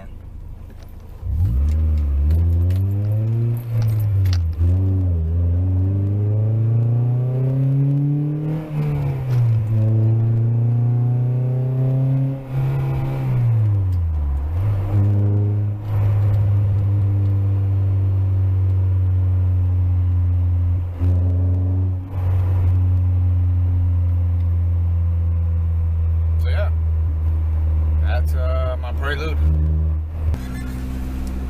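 Honda Prelude's four-cylinder engine and exhaust heard from inside the cabin with the windows up, revving up through the gears with a drop in pitch at each shift, then holding a steady drone while cruising. The catalytic converter has busted and is yet to be replaced.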